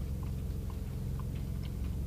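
A person chewing a bite of a soft, soggy breaded mozzarella pizza bite: a few faint, scattered soft clicks, with no crunch, over a low steady hum inside a car.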